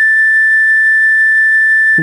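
A recorder holding one long, steady high A, the final note of the melody.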